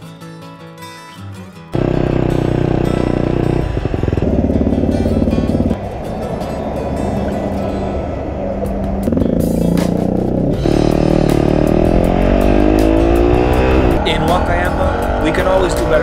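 Acoustic guitar music, which cuts suddenly to a much louder mix of sound about two seconds in. In the second half, a Yamaha WR250R's single-cylinder engine rises in pitch again and again as it accelerates up through the gears, with a short break at each shift.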